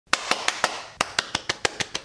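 A person clapping hands in a quick run of about eleven sharp claps, roughly six a second, with a brief pause after the fourth: test claps to check the sound.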